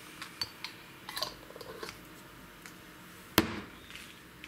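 Light clicks and taps of small items being handled and set down on a hard, glossy workbench, then one sharp knock a little over three seconds in, the loudest sound.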